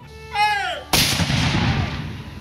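A short shouted call falling in pitch, then about a second in a single shot from a Civil War muzzle-loading field cannon firing a black-powder charge. The shot is a sudden loud blast whose boom trails off over about a second.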